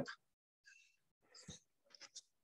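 Near silence on a video-call line, broken by a few faint, brief sounds about midway and near the end.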